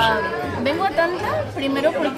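Chatter of restaurant diners: several voices talking over one another in a busy dining room.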